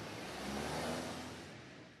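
Mercedes-Benz S-Class sedan pulling away: engine and tyre noise that swells to a peak about a second in, then fades out near the end.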